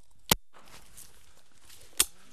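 Two shotgun shots, one about a third of a second in and the other near the end, each a single sharp report.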